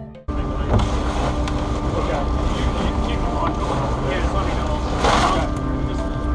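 Music cuts off a moment in, giving way to the steady low rumble and hum of a research vessel's engine, with indistinct crew voices over it. A short rush of noise comes about five seconds in.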